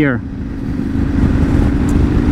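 Yamaha Ténéré 700's parallel-twin engine pulling from low revs in third gear, getting louder over the first second or so as the bike accelerates.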